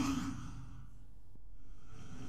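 AI-generated whoosh sound effect playing back: an airy rush that peaks right at the start and dies away over about a second. A second whoosh begins to swell near the end.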